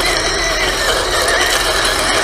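SG1203 Ripsaw RC tank's brushed electric drive motors and gearboxes whining steadily as it drives on its tracks, the pitch wavering slightly.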